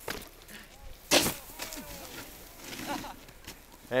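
A snowboard hitting the snow hard about a second in as the rider lands a jump over a tyre and goes down, after a smaller knock right at the start.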